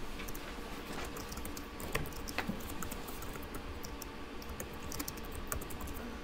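Typing on a computer keyboard: irregular quick key taps over a steady electrical hum.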